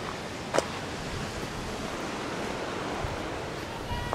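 Steady rushing noise of distant ocean surf and wind, with one sharp click about half a second in.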